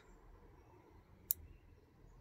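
A single sharp click from the XH-M609 low voltage disconnect module being worked by hand, just past the middle, over faint background noise.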